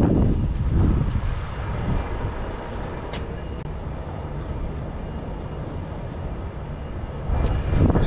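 Low, unsteady rumble of a vehicle engine running nearby, louder in the first second and again near the end.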